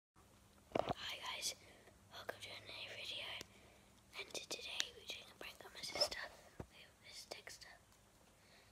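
A boy whispering close to the microphone in several short phrases.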